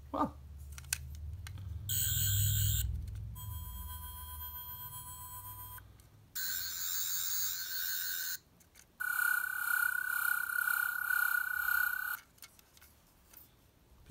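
Toy Twelfth Doctor sonic screwdriver playing its electronic sonic sound effect from a small speaker: about four separate bursts of high, warbling electronic tones, each one to three seconds long, as its switch is pushed through the light modes.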